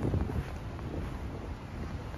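Wind buffeting the microphone of a handheld camera outdoors, a steady low rumble.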